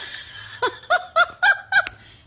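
A person laughing in a run of about five short, rhythmic bursts.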